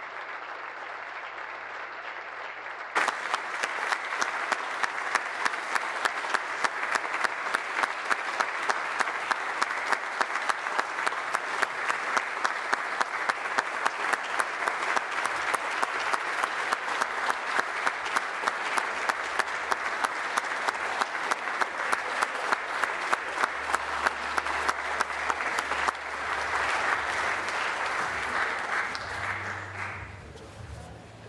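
A chamber full of legislators clapping. About three seconds in, the applause suddenly grows louder, with a steady rhythmic beat running through it, and it dies down near the end.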